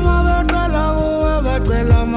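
Loud live music over a PA: a male vocalist holding long notes into a handheld microphone over a backing beat with heavy bass and deep kick drums.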